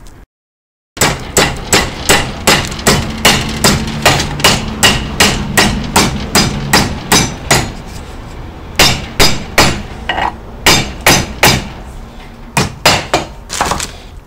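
Hammer blows on a steel rod clamped in a bench vise, bending a step into it. The blows come in steady runs of about three a second, with two short breaks.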